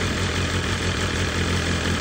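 2023 BMW S1000RR-family superbike's inline-four engine idling steadily, with an even low hum.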